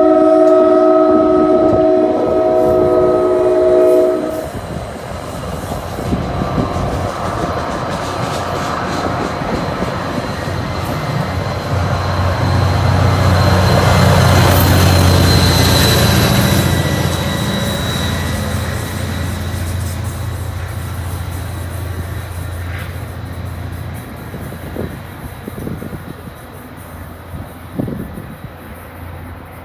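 A multi-chime train horn sounding its chord in a horn show, cutting off about four seconds in. The passenger train's trailing diesel locomotive then goes by working hard, its engine drone building to a peak halfway through and fading slowly as the train pulls away, with rolling wheels clicking on the rails.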